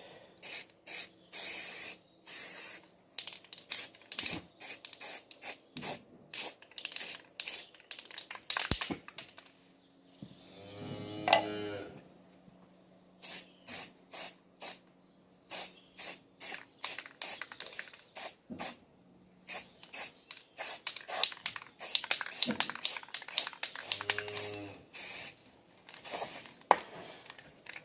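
Aerosol spray-paint can sprayed in many short hissing bursts, about two a second, with a few pauses. About halfway through, a short rising cry is the loudest sound, with a shorter one near the end.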